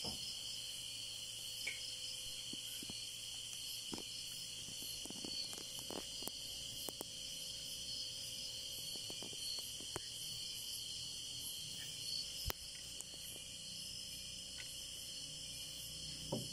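Steady, high-pitched chirring of night insects, with a few scattered light clicks and knocks.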